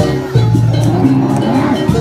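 Loud live jaranan music: low held tones that shift in pitch every half second or so, over scattered percussion strokes.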